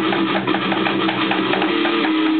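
Amateur rock band playing an instrumental passage: electric guitars strumming chords over a steady beat of about four strokes a second, with drumming.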